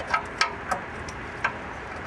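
Metal wrench clicking against the oil pan drain plug as it is worked onto the plug: four sharp clicks at uneven intervals.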